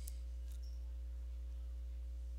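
Steady low hum with faint room tone, and a faint click near the start and another about half a second in.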